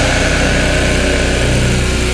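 A melodic death metal band plays heavy distorted guitars and drums. The sound is dense and steady, driven by a rapid, even low pulse.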